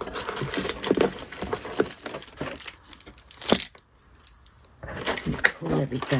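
Rummaging in a cardboard shipping box: packaging rustling and crinkling with small clicks and knocks as a boxed product is pulled out. There is one sharp knock about three and a half seconds in.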